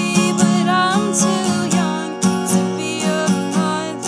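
Acoustic guitar strummed in a steady rhythm, with a woman singing a melody over it.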